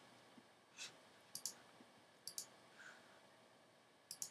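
Faint computer mouse clicks: one single click, then two quick double clicks.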